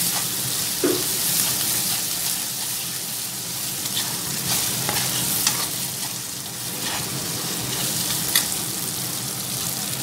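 Chopped onions, green chillies and curry leaves sizzling steadily in hot oil in a kadai, stirred with a steel spoon that scrapes and clicks against the pan now and then.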